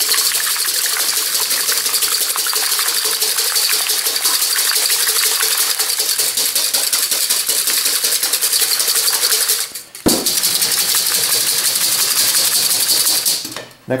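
Wire balloon whisk beating eggs in a copper bowl: a fast, steady scraping clatter of the wires against the metal. It breaks off briefly about ten seconds in, resumes, and stops shortly before the end.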